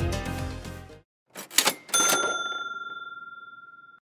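Backing music fades out, then a short clatter is followed by a single bright bell-like ding that rings on and slowly fades: an editing sound effect for a transition.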